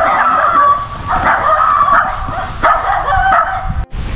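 A dog barking and yelping in three loud stretches, cut off abruptly just before the end.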